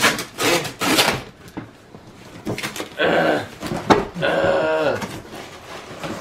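Tall cardboard box being torn open by hand: sharp rips of packing tape and cardboard in the first second or so, then longer drawn-out sounds about three and four to five seconds in.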